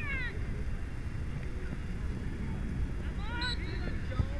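Short, high-pitched shouts from soccer players on the field, one right at the start and another about three seconds in, over a steady low rumble of outdoor noise on the microphone.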